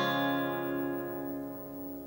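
A C-shape chord on a steel-string acoustic guitar, capoed at the first fret, ringing out and slowly fading with no new strum.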